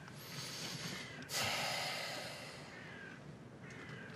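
A man breathes in, then lets out a long, heavy breath through the nose, starting suddenly about a second in and fading away.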